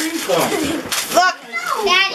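Young children's high-pitched voices talking and calling out over one another.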